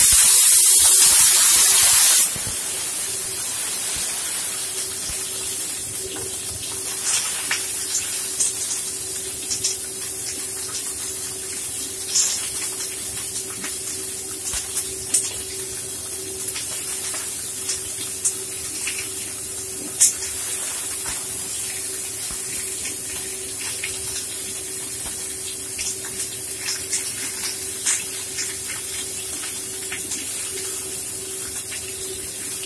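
Hot oil in a frying pan sizzling loudly as stuffed large chili peppers go in, for about two seconds. It then settles into a steady frying hiss with scattered spits and pops as they cook.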